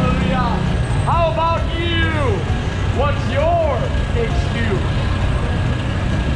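Loud street preaching: a voice shouting in long rising-and-falling phrases over a steady low rumble of traffic.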